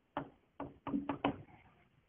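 Chalk striking a blackboard as a short word is written: five sharp taps over about a second, the last three close together.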